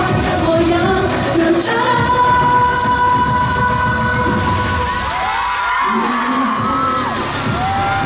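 Live pop music over a large PA: a woman singing with a loud dance backing track, holding long notes. Near the end the bass briefly thins out and the crowd cheers and screams.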